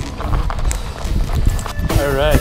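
Handling noise on a body-worn action camera's microphone, with irregular knocks and rustling rumble as it rubs against clothing and harness straps.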